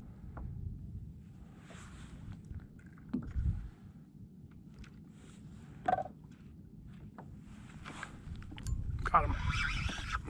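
Water lapping against a plastic kayak hull over a low wind rumble, with a few soft clicks and knocks from the fishing gear; it gets louder near the end.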